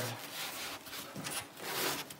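A wooden board scraping and rubbing against the house framing in a few irregular strokes as it is shifted by hand into position, loudest near the end.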